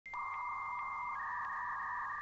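Sustained electronic synth tones of a channel-logo intro: a low, buzzy band under a steady high tone that steps down a little just past the middle.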